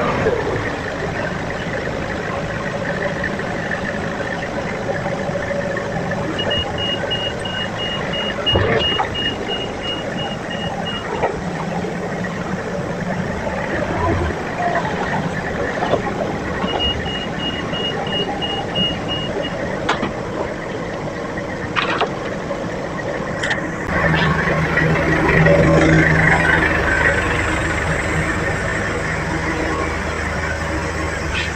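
Forklift running and moving about at close range, with two spells of rapid warning beeps from its alarm and a few sharp metal knocks. Its engine and lift hydraulics grow louder and heavier near the end.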